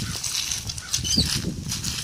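Wire-cage nut gatherer, about half full of pecans, being rolled over grass and dry leaves: uneven rustling and crunching.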